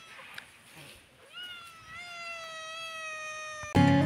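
A black kitten gives one long, drawn-out meow starting about a second in, holding its pitch and sinking slightly. Acoustic guitar music cuts in loudly just before the end.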